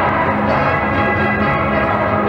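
Ragtime dance music playing steadily, with many held notes sounding together.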